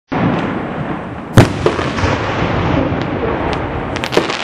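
Aerial fireworks going off: a sharp, loud bang about a second and a half in, then a few smaller pops, over a continuous rushing noise.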